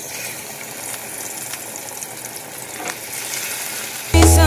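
Seasoned pork chops sizzling in hot oil in a frying pan, a steady hiss.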